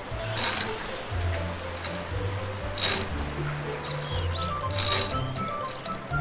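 Background cartoon music with a low bass line. Over it, a playground swing squeaks three times, about every two seconds, as it rocks back and forth.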